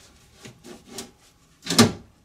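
Door glass of a 2010 Mitsubishi Outlander rubbing and scraping against the door frame and seals as it is turned and worked out of the door, with a few faint ticks and a short, louder bump a little before the end.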